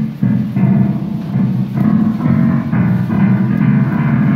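Digital piano played with clusters of low and middle notes struck together, repeated several times a second.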